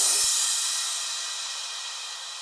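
The last cymbal crash of the background music ringing out after the song stops, fading away steadily.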